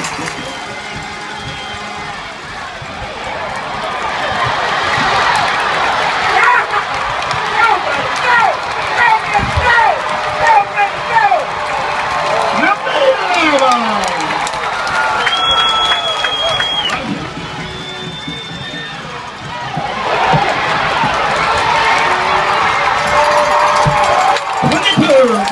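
Football crowd in the stands cheering and shouting during a long run, swelling twice and dipping briefly between. A short high whistle sounds a little past the middle.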